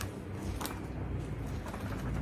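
Pages of a paperback book being leafed through: a few soft paper flicks over a low, quiet background.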